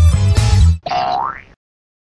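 Upbeat intro music with heavy bass and guitar, cut off less than a second in by a cartoon "boing" sound effect: one rising glide lasting about half a second.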